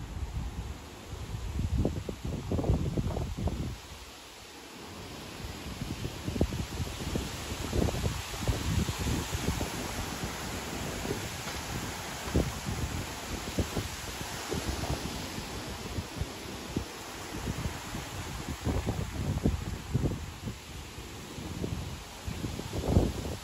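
Gusty wind buffeting the phone's microphone in uneven low rumbles, with leaves rustling in the trees as a hiss that swells in the middle and eases off near the end.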